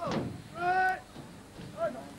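A person's shouted calls: one long held shout about half a second in, then a short one near the end.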